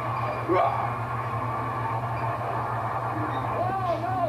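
Sound of a televised wrestling match playing from a TV set: indistinct voices over a steady low hum, with a brief, louder rising sound about half a second in.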